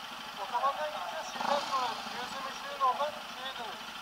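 Faint, muffled voices talking, with no clear words.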